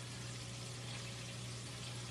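Meatloaf patties frying in a pan on the stovetop, a faint, steady, even sizzle, over a low steady hum.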